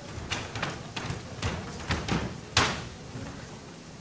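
Karate sparring on a wooden floor: a quick series of sharp thumps and slaps as bare feet strike and slide on the boards and gloved strikes land, about eight in all, the loudest about two and a half seconds in.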